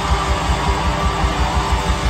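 Hardcore punk band playing live through a PA: loud distorted electric guitars over a steady fast drum beat.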